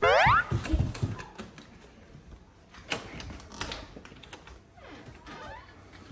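A quick rising, whistle-like glide right at the start, then faint clicks of a front-door knob and latch being turned.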